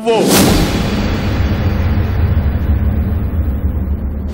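Dramatic TV-serial sound effect: a sharp whoosh-hit about a quarter second in, followed by a long, deep boom that slowly dies away.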